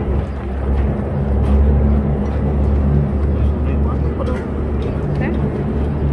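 Busy outdoor street noise: a loud, steady low rumble with indistinct voices of people nearby.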